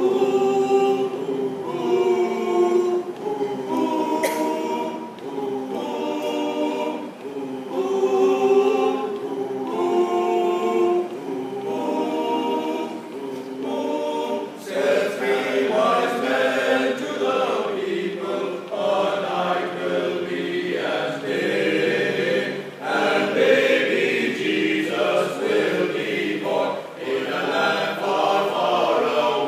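A men's choir of six voices singing a cappella in close harmony, holding sustained chords that change every second or two. About halfway through the singing becomes fuller and louder in the upper voices.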